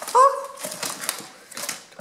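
Plastic-wrapped scrapbooking supply packs being handled and laid on a table: light clicks and rustles of packaging. A short voiced exclamation comes right at the start.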